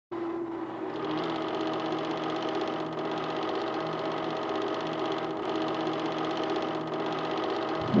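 A film projector running: a steady whirring hum with a fast, even mechanical chatter from the film transport.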